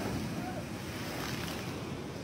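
Seawater from a broken wave washing and foaming across a concrete pier, a steady rushing wash.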